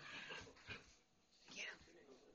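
Young puppies play-fighting, giving a few short high-pitched cries, the last one falling in pitch.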